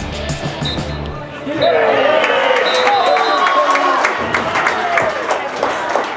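Background music with a steady bass line that cuts off about a second in, followed by several people's voices talking and calling out over one another.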